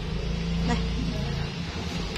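Steady low motor hum, like a vehicle engine running nearby, over a faint even background noise.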